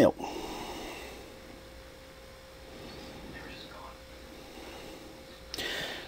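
Quiet room tone with a faint steady hum. Near the end a person takes a breath in, just before speaking again.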